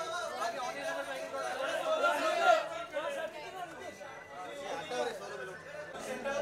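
Several voices talking over one another: steady crowd chatter with no single clear speaker.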